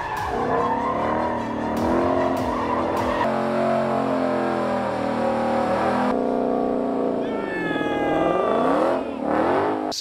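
Ford Mustang Shelby GT500's supercharged V8 revving hard through a burnout and drift, its pitch rising and falling repeatedly. The rear tyres squeal and skid on pavement, most plainly near the end.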